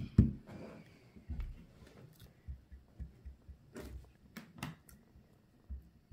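Metal spoon stirring thick cornstarch-and-water oobleck in a glass bowl: dull thuds and soft scraping as the mixture stiffens, the loudest thud right at the start. A few sharp clicks of the spoon against the glass come past the middle.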